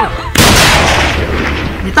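A single loud gunshot about a third of a second in, trailing off in a long fading echo.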